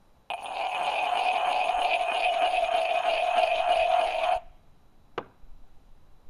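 Unglazed foot of a fired stoneware mug being ground against another fired pot, a steady gritty scrape of about four seconds that stops abruptly. This smooths the rough, untrimmed bottom. Two light knocks follow near the end as the mugs are set down.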